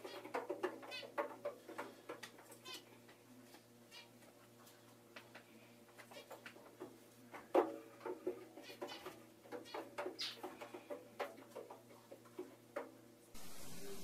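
Cat meows with repeated knocks and bumps inside a front-loading washing machine drum, over a steady low hum. Near the end it switches abruptly to a steady hiss.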